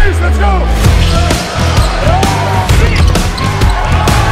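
Soundtrack music with a heavy bass beat, opening on a deep boom with a falling sweep. It is mixed with basketball game sound: sneakers squeaking and a ball bouncing on the court.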